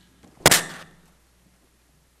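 A single sharp thump about half a second in, loud and brief, with a short ringing tail, as of something knocking against the table microphone.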